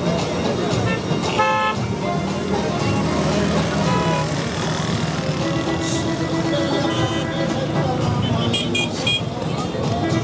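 Chatter of a large outdoor crowd with car horns tooting among slowly moving cars: a short horn blast about a second and a half in and a few quick toots near the end.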